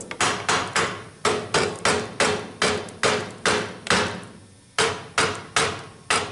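Claw hammer tapping repeatedly on the edge of a clamped, glued wooden frame-and-panel assembly, about three sharp taps a second with brief pauses, to seat the rail-and-stile joints tight.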